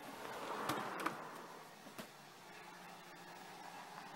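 Handling noise from a handheld camera being carried: a brief scraping rustle with light knocks about a second in, a single click at about two seconds, over faint room hiss.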